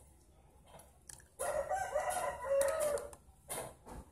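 A rooster crowing once, a single long call lasting about a second and a half in the middle, the loudest sound here. Around it come a few soft knocks of a metal spoon scooping water in a plastic tub.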